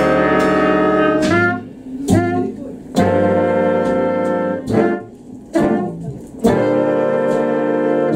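Swing big band of trumpets, trombones and saxophones playing full ensemble chords. The chord breaks off about a second in and gives way to short punchy stabs with quiet gaps between them. A long chord is held again from about six and a half seconds.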